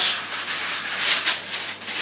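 Baking paper rustling irregularly under hands pressing and smoothing a layer of dough beneath it.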